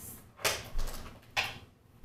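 Two brief scraping noises about a second apart, household handling sounds from someone moving about off-camera.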